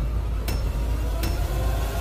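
Edited sound effect under an on-screen tally: a deep, steady rumble with a sharp metallic hit twice, about three quarters of a second apart.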